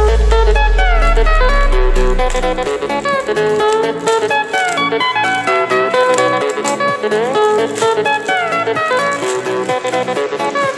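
Background music led by guitar, with sliding notes over a steady rhythm. A deep low tone fades out in the first couple of seconds.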